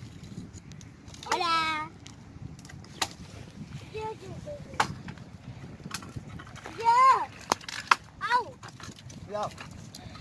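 Dry branches being snapped and broken for firewood, giving about five sharp cracks spread through the middle, between short high-pitched calls from a child.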